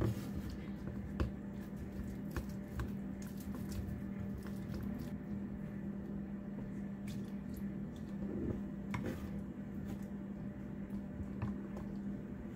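Mashed pumpkin being stirred into milk with a plastic spatula in a glass bowl: wet squelching with scattered light clicks of the spatula against the glass, over a steady low hum.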